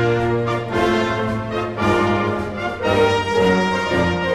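Symphony orchestra playing a light medley of old film melodies, with trumpets and trombones to the fore, the held chords changing about once a second.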